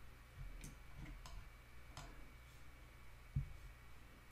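Faint, scattered clicks of a computer mouse, a few sharp ticks spread over the seconds, with one soft low thump about three and a half seconds in.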